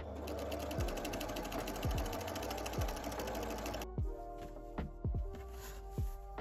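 Electric domestic sewing machine with a walking foot stitching steadily at speed through a padded, layered placemat for about four seconds, then stopping. It is sewing with the rubbery non-slip backing face up, which the crafter says is very difficult for the machine to go over.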